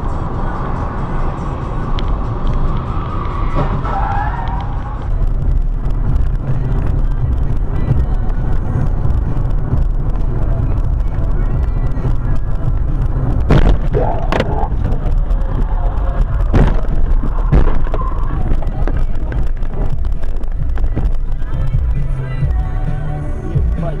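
Vehicle driving noise: a loud, steady low rumble with music and talk mixed in underneath, and a few sharp knocks around the middle.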